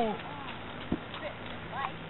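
A shouted voice falling in pitch as it trails off at the start, then a single sharp knock about a second in and a brief faint call near the end, over steady background noise.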